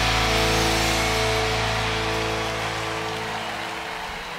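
Music: the closing chord of a guitar-driven intro track, held and fading away.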